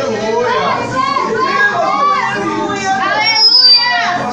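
Many voices at once, overlapping and loud: a congregation crying out and praying aloud together, with no single voice leading. A short high whistle sounds near the end.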